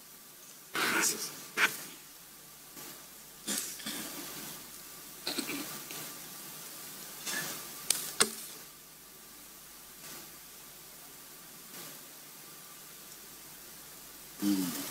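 Papers being handled at a table crowded with microphones: a series of short rustles and knocks, the sharpest around a second in and around eight seconds in, over a steady line hiss.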